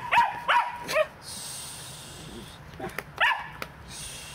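West Highland white terrier barking in short, high yips during play: three quick barks in the first second, then one or two more about three seconds in.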